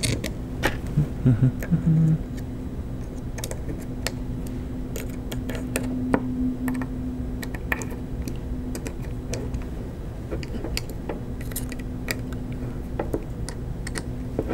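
Small metal clicks and ticks of a hex key and M3 bolts against an acrylic plate and motor as the bolts are screwed in and tightened, scattered irregularly, over a steady low hum.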